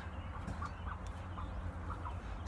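Hens clucking softly in the coop: a few short, faint clucks over a low background rumble.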